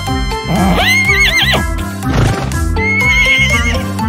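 Horse whinny sound effect, heard twice over children's background music: a rising whinny with a quavering tail about half a second in, and a shorter quavering one about three seconds in.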